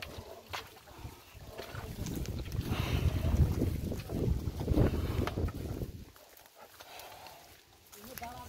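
Two water buffalo hauling a wooden-wheeled cart through mud: hooves and wheels sloshing and squelching as it passes close, loudest in the middle and falling away near the end.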